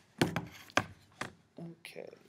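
A few sharp knocks and taps close to the microphone, roughly half a second apart.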